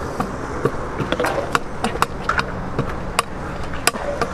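Freestyle scooter hopping up concrete steps, its wheels and deck landing on each step with a series of irregular sharp clacks over a steady outdoor background noise.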